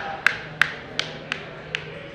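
A marker tapping on a glossy game board, sharp taps slightly unevenly spaced at about three a second, as the states along a route are counted off.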